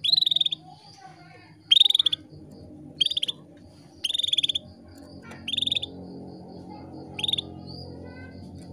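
Female canary giving short, quick trilled calls, six in all, each under half a second and spaced about one to one and a half seconds apart. This is the hen's calling to a male, the sound used to bring male canaries into breeding condition and get them singing.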